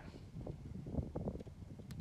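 Faint wind rumble on the microphone, with a few soft, faint knocks.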